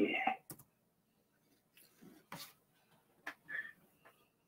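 A few faint, scattered clicks of computer keys being pressed, a single sharp click now and then with pauses between.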